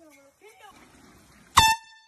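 A single short, very loud air horn blast about one and a half seconds in: one high steady tone that starts abruptly and dies away within half a second.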